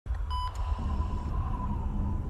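Low, steady rumbling drone of an intro soundtrack, with a short high beep about a third of a second in and a faint thin tone held after it.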